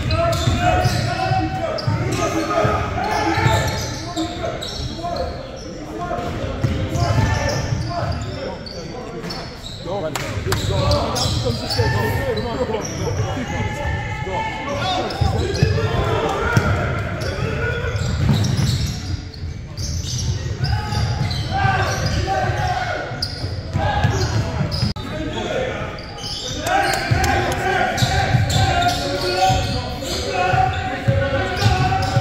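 Basketball dribbled and bounced on a wooden gym floor during play, among the indistinct calls and chatter of players and spectators in a large gym.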